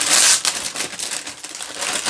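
Clear plastic bag of crunchy muesli crinkling and rustling as it is handled. Loudest in the first half-second, then softer and uneven.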